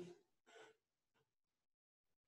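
Near silence: room tone, with the end of a man's spoken word fading out at the very start and two faint, short soft sounds about half a second and a second in.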